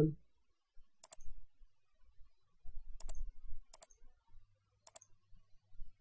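Computer mouse clicks, about four of them spread over several seconds, each a quick double tick of press and release.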